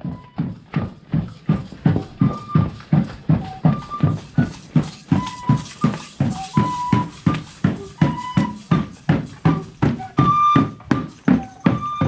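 A drum beaten at a steady pace, about three beats a second, with short high flute notes playing a simple tune over it.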